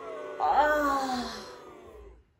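A woman's drawn-out, distressed moan that falls slowly in pitch and fades.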